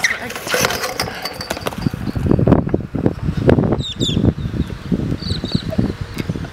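Stunt scooter wheels rolling on concrete and a crash as the rider falls, heard as a dense noisy burst in the first second followed by irregular rumbling noise.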